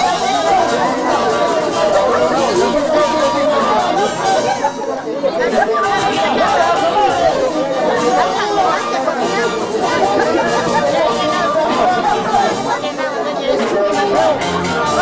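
Chatter of a group of people talking over one another, loud and close.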